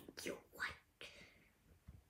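A young girl whispering a few short words, then a fainter breath.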